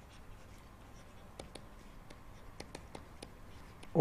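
A pen writing by hand, heard as faint, irregular scratches and light ticks from the strokes.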